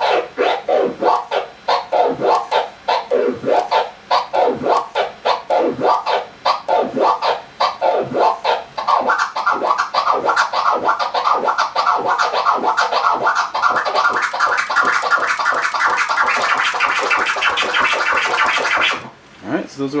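Flare scratches on a vinyl record: the record pushed back and forth under the needle with the crossfader open, each stroke chopped by a quick crossfader click. The strokes come at a moderate pace at first, then about halfway through speed up into a fast continuous run that rises slightly in pitch, and stop abruptly near the end.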